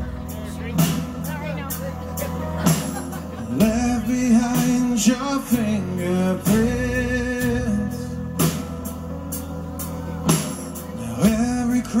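Live performance of a slow rock ballad: a male singer's lead vocal, sung close into a microphone, over a band with drum hits landing about every two seconds.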